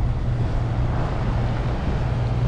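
A boat engine running steadily, giving a low, even drone under a wash of water and air noise.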